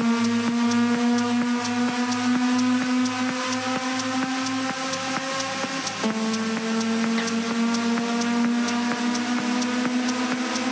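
Techno music: a sustained synth chord over a pulsing bass line and evenly ticking hi-hats, with no kick drum, as in a breakdown. The synth moves to a new, slightly lower chord about six seconds in.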